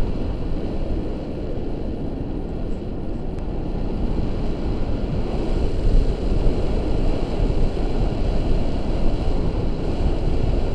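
Wind buffeting a camera microphone on a tandem paraglider in flight: a loud, steady, low rush of airflow that swells and eases a little.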